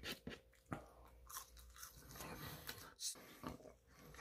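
Close-miked eating sounds: chewing and biting into fast food, heard as a string of short, faint crunches.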